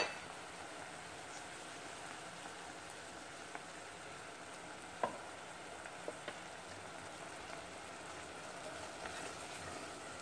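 Chopped shallots and ginger sizzling in caramelized sugar and coconut oil in a steel pot: a steady frying hiss, with a couple of faint clicks about halfway through.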